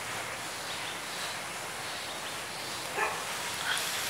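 Outdoor field ambience: a steady even hiss, with a short sharp sound about three seconds in.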